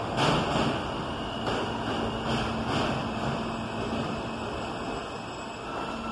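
An R160 subway train pulling into an elevated station, a steady rumble of wheels on rail, with a few sharp knocks in the first three seconds.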